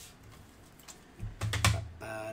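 Hard plastic graded-card slabs clicking and knocking together as they are handled. A few faint clicks come first, then a quick cluster of clacks with a dull thump near the end.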